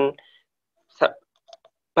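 A pause in a man's speech with one short, sharp breath or mouth sound from him about a second in, followed by a couple of faint small clicks.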